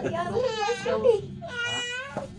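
Voices exclaiming, ending in a high-pitched, drawn-out cry of about half a second.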